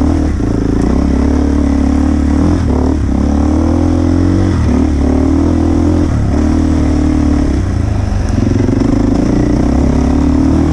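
Enduro dirt bike engine heard from on the bike. It runs in steady stretches of throttle broken by brief throttle-offs every one to two seconds as the rider works along a rough trail.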